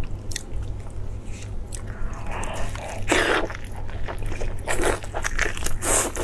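Close-miked eating sounds: a person biting and chewing braised meat, with irregular wet mouth clicks and bursts that grow busier and louder from about two seconds in. A steady low hum runs underneath.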